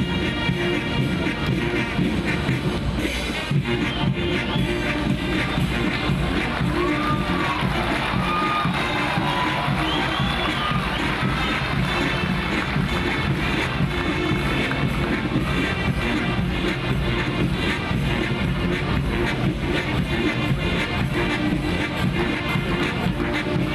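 Military marching band playing: brass including sousaphones, trombones and trumpets over snare drums and a bass drum.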